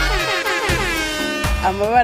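Advert music with a loud horn blast that slides down in pitch over about a second and a half. A voice comes in near the end.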